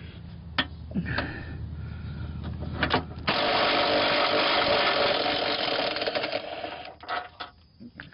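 A socket tool spinning out an already-loosened long motor mount bolt on a 2005 Chrysler Sebring: a loud steady run of about three seconds, starting about three seconds in and fading out, after a few knocks of tool on metal.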